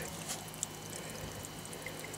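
Steady trickle of water running through a homemade plastic-bucket radial flow filter and dribbling out where a badly drilled hole leaks.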